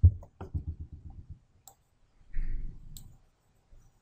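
Computer keyboard keystrokes in the first second or so, as a file name is typed, then a dull thump a little past two seconds and a sharp mouse click about three seconds in.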